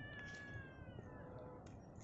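Faint, drawn-out animal call: a high whine falling slightly in pitch that fades out a little over a second in.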